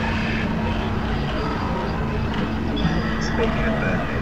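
A dense, steady wash of noise with a constant low hum and fragments of indistinct voices mixed in, none of them clear enough to make out words.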